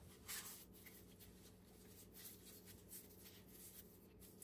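Near silence, with faint soft rubbing and scuffing of hands pinching and tucking the ends of a rolled loaf of bread dough on a floured countertop, over a faint steady hum.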